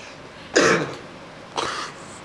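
A person coughing or clearing their throat twice, about a second apart, the first the louder.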